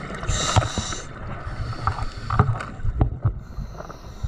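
Underwater sound of scuba diving: a hiss of breath through a regulator about a third of a second in, then a softer one, with low bubbling rumbles and a few sharp clicks from the water and the camera housing.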